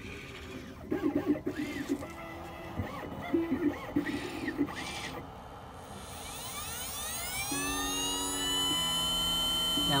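The Xhorse Condor XC-Mini key-cutting machine's cutter spindle motor starts about halfway through. Its whine rises in pitch and then holds steady as it comes up to cutting speed.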